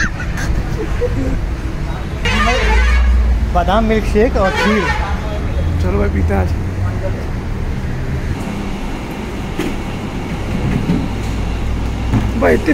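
Street traffic: vehicle horns honking a couple of times in the first half, over a low, steady rumble of passing vehicles.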